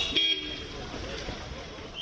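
Vehicle horn giving two short toots in the first half-second, followed by low street background noise.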